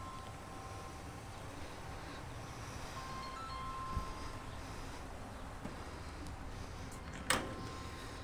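Faint outdoor background with soft chime-like ringing tones that come and go. A little after seven seconds, a sharp metallic click with a brief ring as the latch of a utility-bed side compartment door is released and the door is swung open.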